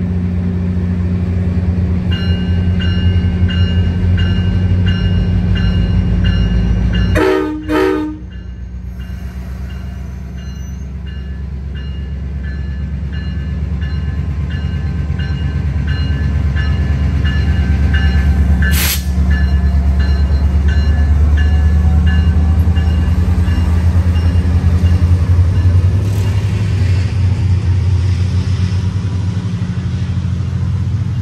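Diesel locomotive of a commuter train (VRE MP36PH-3C) running with a deep steady rumble that grows louder past the middle, while a bell rings about twice a second for most of the time. A brief loud knock about seven seconds in.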